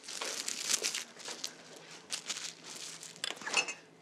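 Plastic wrap crinkling on a wrapped cheesecake as it is handled and carried, with a few light clinks.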